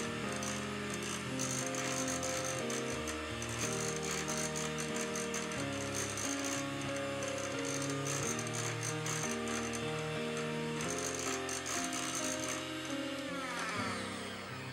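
Background music of held, stepping notes over an electric hand mixer's beaters rattling as they whip softened butter and cream cheese in a glass bowl; the rattling eases near the end.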